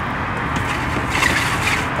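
Steady low background noise, with a brief crinkly rustle of plastic packaging and fabric about a second in as a car grille cover is pulled from its bag.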